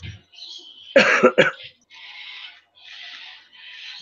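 A person's short, loud burst of three quick cough-like pulses about a second in, followed by three half-second cuts of small scissors through patterned cardstock.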